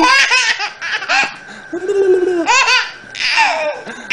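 A baby laughing in about four short bursts of high-pitched giggling.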